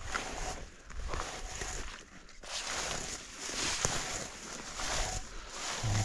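Hand-held berry picker combing through dense blueberry bushes: rustling and scraping of leaves and twigs, rising and falling unevenly.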